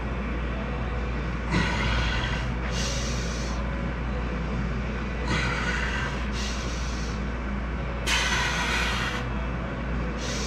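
A man breathing hard through a set of barbell back squats, loud hissing breaths in and out coming in pairs about every three seconds, one pair per rep, over a steady low hum.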